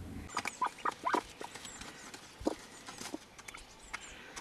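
A scatter of short, irregular taps and clicks, thickest in the first second and a half, with a few more spaced out after.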